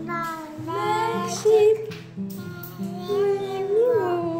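A children's song: a child's voice singing a wavering melody over instrumental backing of steady, stepping held notes.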